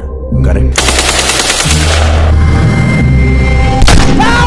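Film soundtrack: a rapid burst of machine-gun fire lasting about a second, over background music with a deep sustained bass. Near the end comes a single loud gunshot.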